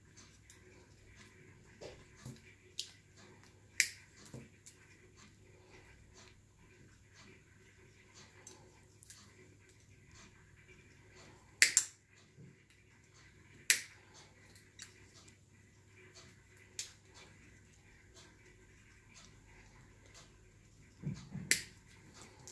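Diagonal side cutters snipping and handling a thin purple plastic tube: scattered sharp clicks and snaps, the loudest a quick double snap about twelve seconds in.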